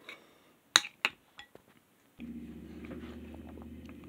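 A metal spoon knocking twice against a ceramic bowl, followed by a couple of lighter taps, while stirring beans. From about halfway a steady low hum sets in.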